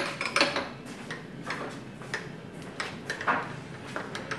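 Irregular light metallic clicks and taps from handling at a manual milling machine while it is being set up for the next drilling step.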